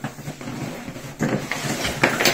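Handling noises from a deflated PVC inflatable paddle board and its fabric carry bag: irregular rustling with a few short knocks, busiest about a second in.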